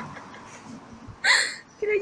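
A young woman's single short, breathy burst of laughter about a second in, loud against the quiet before it; her speech starts near the end.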